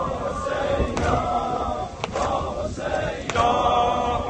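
Crowd of men chanting a Shia mourning lament (noha) refrain in unison, in phrases about a second long, with a few sharp slaps between them.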